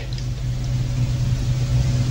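A steady low-pitched hum, even in level and with no change throughout.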